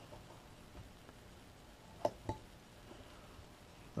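Carving knife making small V cuts in a wooden carving: mostly quiet, with two short sharp clicks close together about two seconds in.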